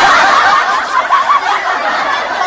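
Loud, high-pitched laughter that carries on without a break.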